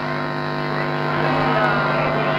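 Steady low electrical hum from portable loudspeakers, with no music playing.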